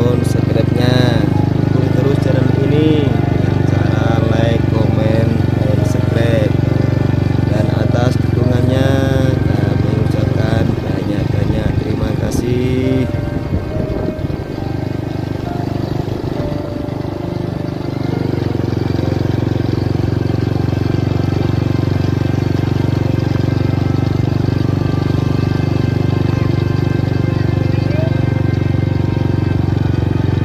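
A small motorcycle engine running at a steady pace, with voices or singing over it for the first ten seconds or so. The engine sound dips and turns uneven for a few seconds near the middle, then steadies again.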